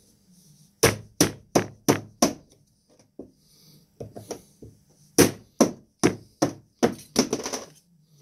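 Repeated sharp knocks, about three a second, as a Milwaukee M18 battery pack's cell holder is struck to loosen tightly fitted 18650 cells: a run of five, a few lighter taps, then another run of about seven.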